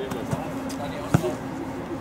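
A football being juggled with the feet: a few dull thuds of foot on ball, the loudest about a second in.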